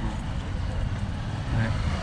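Street traffic: a steady low rumble of vehicle engines from the road.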